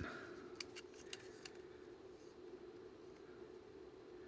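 Near silence, with a few faint light clicks in the first second and a half as plastic harmonic-drive gear rings are handled in the hands, over a steady low hum.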